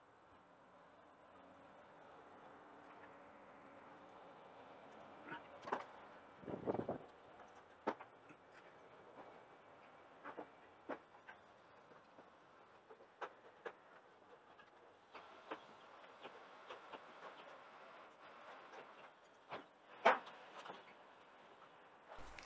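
Faint sped-up ambience of a walk along a covered walkway: a low steady hum with scattered sharp clicks and knocks at irregular intervals, the loudest a cluster about six to seven seconds in and a single knock about twenty seconds in.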